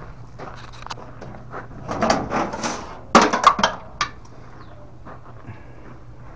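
Rustling handling noise with scattered knocks, including a quick cluster of sharp clacks just after three seconds in, over a faint steady hum.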